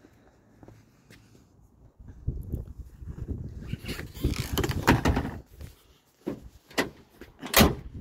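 A pickup's tailgate and bed cover being handled: a few seconds of rattling and knocking, then three sharp knocks, the loudest near the end as the tailgate is shut.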